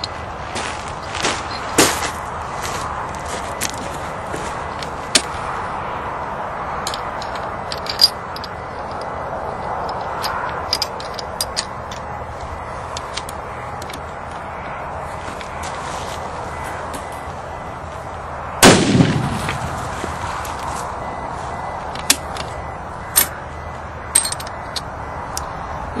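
A single gunshot from a rifle firing a 275-grain bullet in a Capstick straight-wall cartridge, about two-thirds of the way through, ringing briefly after the report. Before it come scattered small clicks over a steady background hiss.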